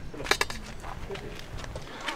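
A quick cluster of sharp clinks about a third of a second in, over low outdoor background sound.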